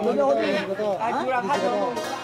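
People talking in conversation, with voices overlapping at times.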